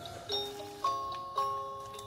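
Miniature light-up retro-TV Christmas decoration playing its tune: a melody of bell-like notes, a new note struck about every half second.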